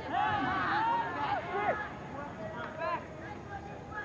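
Raised voices shouting on and around the field, several high calls in the first two seconds and another short one near the end, over steady background noise.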